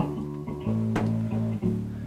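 TC Electronic bass combo amps on a long-term burn-in test, playing music with a bass line of sustained low notes that change every half second or so. Two amps run out of phase, so it is not too loud.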